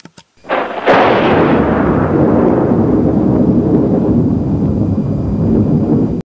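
A sudden loud crack about half a second in and a second sharp crack just after, then a long, steady rolling rumble: a thunder-like boom sound effect.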